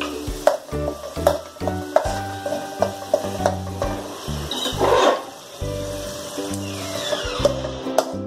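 Steel ladle stirring and scraping a thick masala paste as it fries in an aluminium kadai: repeated knocks of the ladle on the pan and a frying sizzle, with the loudest swell of scraping and sizzle about five seconds in. Background music plays underneath.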